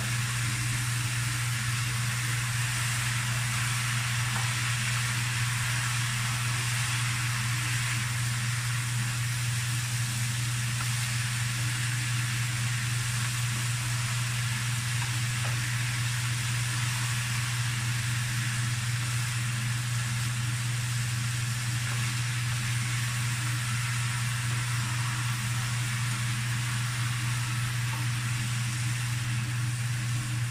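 Chopped bottle gourd and ground pork sizzling steadily in a frying pan while being stirred with a spatula, over a constant low hum.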